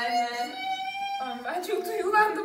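A high voice holds one long note for about a second, then breaks into shorter vocal sounds.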